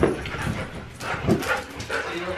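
Two huskies playing on a couch: short whining vocal sounds mixed with scattered thumps and scuffles of paws on the cushions.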